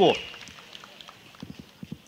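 A man's voice through a microphone finishes a word, then pauses; a few faint clicks are heard near the end of the pause.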